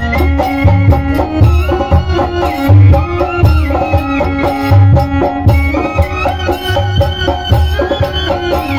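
Indian folk song with a melody line over a steady, loud drum beat.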